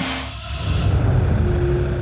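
A low, steady rumble. A faint steady hum joins it past the middle.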